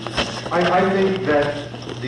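Indistinct talking over a steady low hum, with a single sharp click just after the start.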